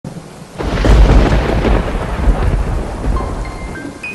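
A thunder clap with a long rumble over rain-like hiss, starting suddenly about half a second in and dying away slowly. It serves as a dramatic intro sound effect. A few faint steady tones enter near the end.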